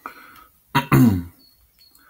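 A man clearing his throat: a faint breathy noise at the start, then a louder short voiced grunt about three-quarters of a second in.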